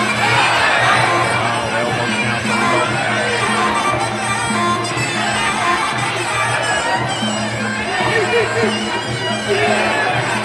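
Muay Thai sarama fight music from a ringside band: a reedy pi java oboe melody over drums, with crowd voices.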